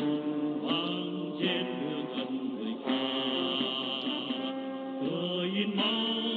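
Music with chant-like singing: long held vocal notes that slide to new pitches every second or so.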